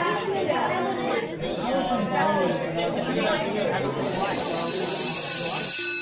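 Many voices chattering at once, then a high bell ringing steadily for about the last two seconds, the loudest part, which cuts off suddenly.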